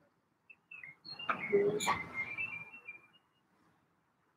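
A bird chirping in short, high calls, mixed with an indistinct voice for about two seconds, with a sharp click in the middle; quiet after about three seconds in.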